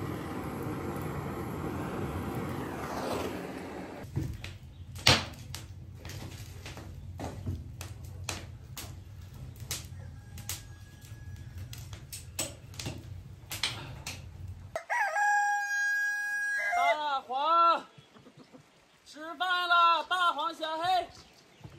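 A handheld butane torch hisses as it lights a pile of dry tea-tree twigs, cutting off about four seconds in. The fire then crackles and pops for about ten seconds. About fifteen seconds in, a rooster crows once.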